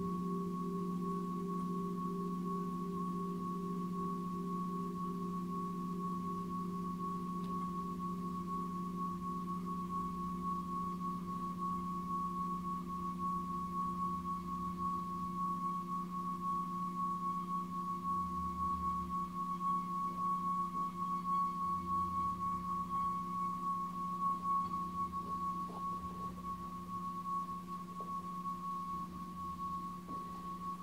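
Long sustained ringing of a metal meditation instrument: a steady low hum with a clear higher tone above it, pulsing slowly as its tones beat against each other. No fresh strike; it swells a little in the middle and eases slightly near the end.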